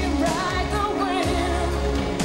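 1980s pop song: a woman's lead voice singing long held notes with vibrato over a backing band with a strong, steady bass.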